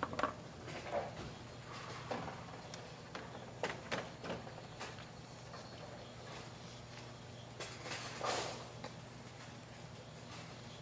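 Quiet bowling-centre ambience: a steady low hum with scattered faint knocks and clatters, and a slightly longer burst of noise a little past eight seconds in.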